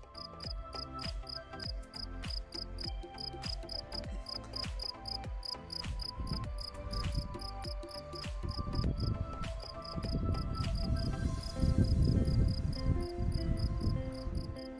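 An insect in a meadow chirping in a steady rhythm, about three short high chirps a second, over background music. Low wind rumble on the microphone builds in the second half and is the loudest sound near the end.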